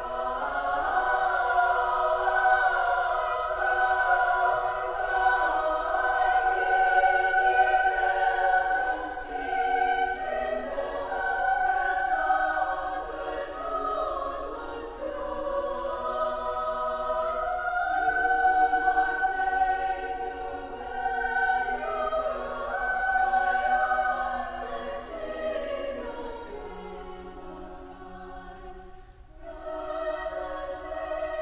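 Women's choir singing sustained chords in phrases that swell and ease. Near the end the sound thins out briefly before the next phrase begins.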